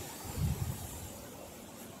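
Beach background noise: a steady hiss of wind and waves, with a brief low rumble of wind on the microphone about half a second in, growing slowly quieter.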